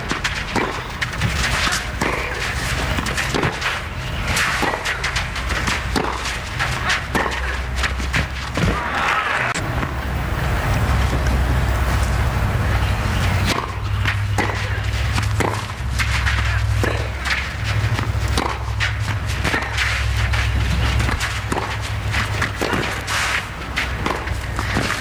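Tennis rally: a ball struck back and forth by rackets, sharp hits a second or so apart, with players' footsteps on the court and a low rumble under much of the second half.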